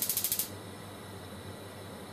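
Flammability-test gas burner being lit: its spark igniter clicks rapidly, about fifteen to twenty times a second, then stops about half a second in as the flame catches. A steady soft hiss of the burning test flame follows.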